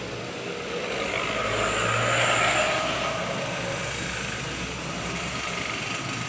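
A vehicle passing by, a rushing noise that swells to its loudest about two seconds in and then eases off into a steady background.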